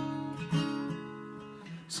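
Acoustic guitar chords strummed and left to ring, with one soft strum about half a second in, fading away before the next phrase.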